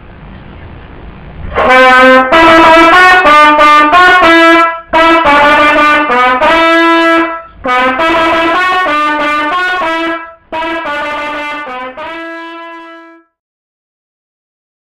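Solo trumpet playing a short melodic intro in four phrases, starting about two seconds in with brief breaks between phrases. The last note is held and then cuts off suddenly.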